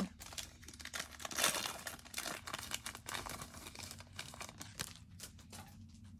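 A foil trading-card pack being torn open and crinkled by hand, with the cards handled as they come out. It is busiest about a second and a half in and thins out near the end.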